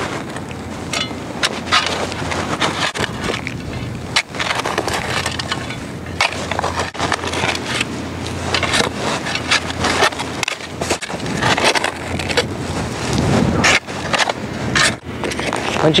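Steel shovel blade digging slowly into rocky, gravelly soil: irregular scrapes and crunches of the blade against stones and dirt, over a steady low hum.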